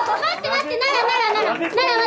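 Several young girls' high-pitched voices laughing and crying out excitedly, in quick bursts one after another.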